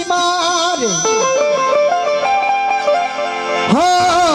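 Live folk song with harmonium: a male voice finishes a sung line in the first second, the harmonium carries a short melody of held, stepwise notes over a plucked-string drone, and the voice comes back in strongly near the end.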